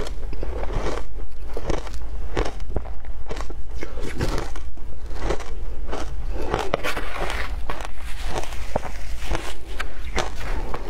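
Crunching and chewing a mouthful of frozen shaved ice close to a lapel microphone, with irregular crisp crunches about one or two a second.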